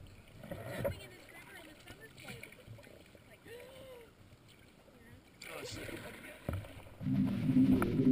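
Raft paddles dipping and water moving on a river, with faint voices in the background. About seven seconds in, a much louder, closer sound of paddling and water begins.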